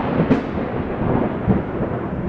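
Thunder rumbling, deep and rolling, with a steady hiss over it and a couple of low swells.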